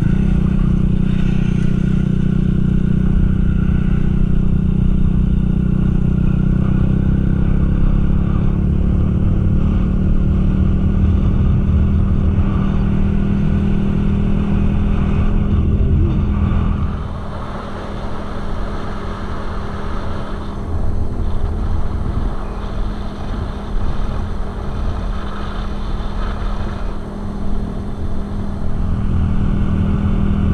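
Suzuki Smash 115 motorcycle's small single-cylinder four-stroke engine running steadily while riding, with road and wind noise. About seventeen seconds in, the steady engine note gives way to a quieter, uneven rumble.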